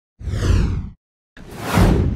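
Two whoosh sound effects for an animated logo reveal. The first starts about a fifth of a second in with a falling sweep. The second swells in near the end.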